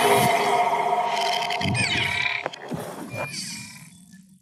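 Electronic logo sting for an animated outro graphic: held synthesized tones with falling sweeps and a sharp hit about two and a half seconds in, fading out near the end.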